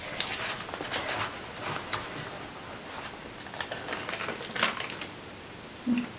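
Paper rustling and scraping as hands rub a scrap sheet pressed onto wet acrylic paint on a journal page, then peel it off to lift some of the paint. It comes as a handful of short, soft rustles, the strongest a little after halfway.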